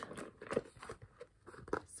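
Handling noise from a leather handbag with a metal chain strap being turned over and opened: soft rustling with a few light clicks.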